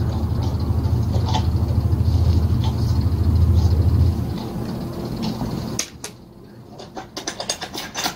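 A low, steady droning rumble that fades away about four to six seconds in, followed by light clicks and taps of hand tools on small metal parts.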